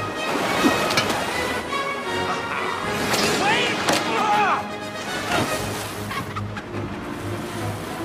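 Animated-film soundtrack: score music with a man's excited shout about three to four seconds in, and several sharp hits of action sound effects.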